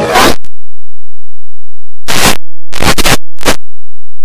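Very loud, harsh bursts of distorted noise from a heavily edited audio track. One burst comes at the very start, and after a gap a cluster of short bursts, scratchy like a zipper, comes about two to three and a half seconds in.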